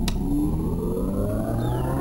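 Film soundtrack effect: a siren-like tone of several pitches gliding slowly upward together over a steady low hum, with a click just after the start.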